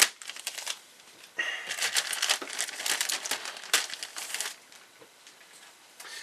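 Thin clear plastic bag crinkling as a plastic kit sprue is slid out of it: a short burst at the start, then about three seconds of steady crinkling that stops well before the end.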